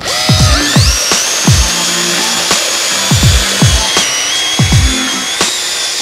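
Cordless drill with a wire cup brush spinning against a wheel hub, its motor whine rising as it spins up near the start and then holding steady. Electronic music with deep falling bass hits plays over it.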